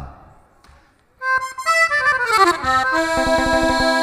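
Accordion (gaita) coming in about a second in with a quick falling run of notes, then holding a sustained chord.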